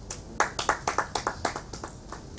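Brief hand clapping from a small audience: about a dozen sharp claps over roughly a second and a half.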